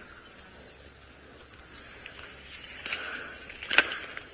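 Quiet outdoor bush ambience, a faint steady hiss with soft high sounds, and one short sharp click near the end.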